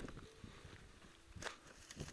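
Faint footsteps and scuffs on a dry, rocky trail, with one sharper crunch about one and a half seconds in.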